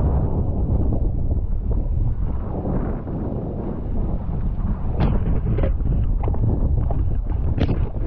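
Strong wind buffeting the microphone of a camera mounted on a paddle shaft, a steady low rumble. From about five seconds in come several sharp splashes of water as the paddle digs into the lake chop.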